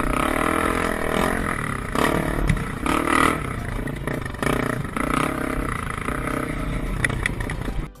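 Dirt bike engine running under throttle, its note rising and falling as the bike rides over a rough trail. The sound cuts off suddenly at the end.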